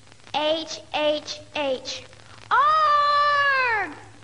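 A girl's voice singing: three short notes, then one long held note that falls in pitch as it ends.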